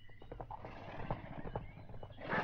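Horses' hooves galloping, a radio-play sound effect, heard faintly as a quick, uneven run of knocks.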